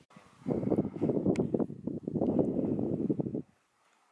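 Wind buffeting the camera microphone: a dense, gusting rumble that starts about half a second in and cuts off sharply about three and a half seconds in.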